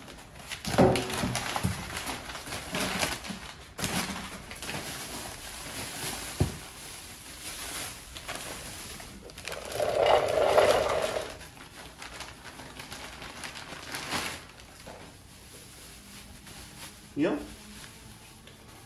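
Packing paper and a plastic bag rustling and crinkling as parts are unpacked from a cardboard box, in irregular bursts with a louder stretch about ten seconds in.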